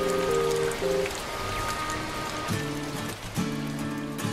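Rain falling on glass roof panes, a steady even patter, under background music of held notes.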